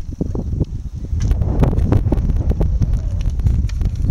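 Wind buffeting the microphone, an uneven low rumble with scattered bumps.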